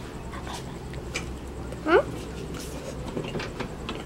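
A dog yelps once, a short sharply rising cry about two seconds in, over faint clicks of a fork and eating sounds.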